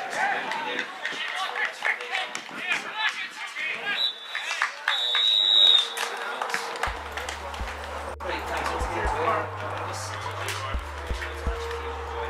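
Players shouting on a football pitch, with a referee's whistle blown loudly about four to six seconds in; around seven seconds in, outro music with a deep steady bass starts.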